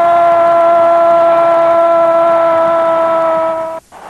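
A male sports narrator's long drawn-out goal shout, "Gooool", held on one steady pitch for nearly four seconds and breaking off abruptly near the end.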